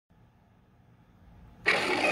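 Faint low hum, then a sudden loud roar near the end: the MGM logo's lion roar, played through a screen's speakers and picked up by a phone.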